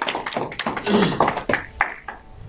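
A run of irregular sharp taps and knocks, with a short burst of voice about a second in.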